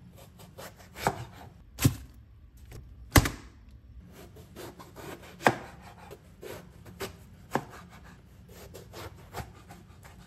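Chef's knife cutting through a raw eggplant and knocking down onto a plastic cutting board: a run of irregular sharp knocks, a few much louder than the rest, as the eggplant is sliced into rounds and then into pieces.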